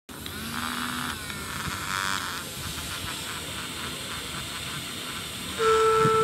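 Small brushed DC motors spinning plastic fan blades, a steady buzzing whir with a hiss. Near the end a louder steady two-note tone starts over it.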